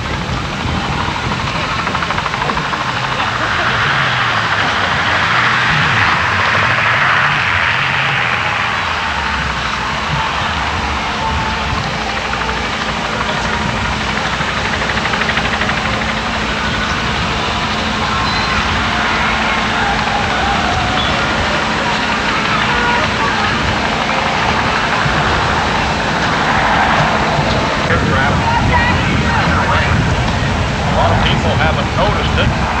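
Indistinct voices of people milling about, over a steady low rumble of outdoor background noise.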